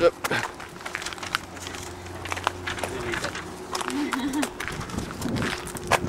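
Indistinct background voices with scattered sharp clicks and knocks, over a steady low hum.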